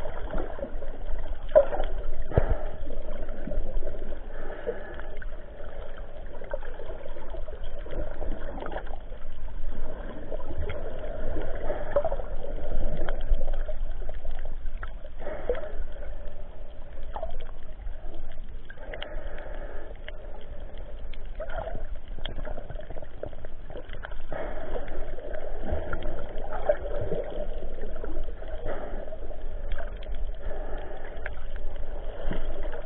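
Water sloshing and gurgling around a snorkeler, with scattered small splashes and clicks, steady throughout.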